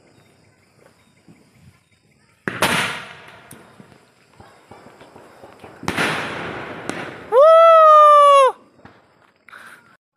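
Two aerial firework shells bursting about three and a half seconds apart, each sharp bang trailing off over a second or so. Near the end comes a loud, high, held tone lasting just over a second.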